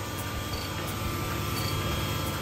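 Sunnen CV-616 cylinder hone running steadily, its mandrel stroking in a cylinder bore of a Chrysler Crown M47-S flathead-six block.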